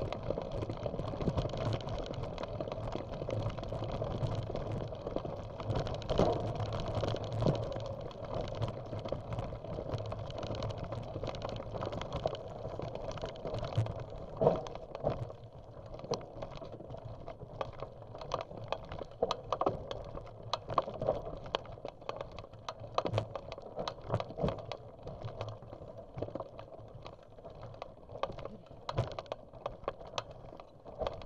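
Bicycle riding over a dirt and gravel trail: tyres crunching and the bike and camera mount rattling, with many sharp clicks and knocks over bumps. It gets quieter in the second half.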